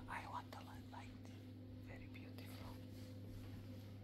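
Faint, hushed voices whispering in short snatches during the first second and again about two seconds in, over a steady low hum.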